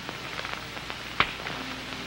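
Faint crackle and hiss of an old film soundtrack, with scattered small ticks and one sharper click a little over a second in.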